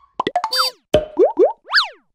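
Cartoon-style logo sound effects: a quick run of pops and clicks, then short rising whistle-like glides, then boings that swoop up and down in pitch, repeating about twice a second near the end.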